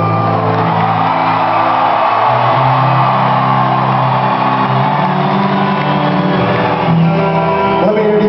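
Live rock band holding long sustained guitar chords that change every second or two, under crowd shouting and cheering.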